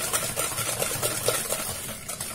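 Wire whisk beating eggs and sugar in a plastic mixing bowl: quick, rhythmic tapping and swishing against the bowl, about four strokes a second.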